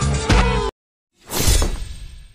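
Pop song with a sung vocal line cuts off abruptly under a second in. After half a second of silence comes a single loud crash sound effect that fades out slowly.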